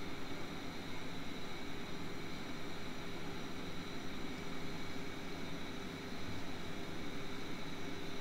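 Steady background room noise: an even hiss with a faint hum, with no speech and no distinct events.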